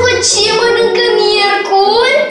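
A high child's voice singing in long drawn-out notes over a background music track.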